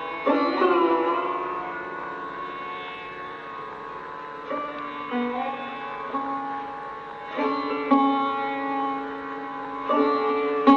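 Sarod playing slow, sparse phrases in Raag Yaman Kalyan without tabla: single plucked strokes a second or more apart, each note ringing on and sliding up or down in pitch.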